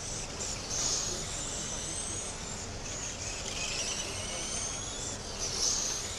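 Radio-controlled Late Model race cars lapping a small oval, their motors giving high-pitched whines that rise in pitch and break off every couple of seconds as the cars speed down the straights and ease off into the turns.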